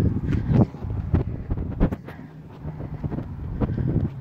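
Wind buffeting a phone microphone as its holder walks, with several sharp knocks from footsteps and handling in the first half. The rumble dies down about halfway through, leaving a faint low hum.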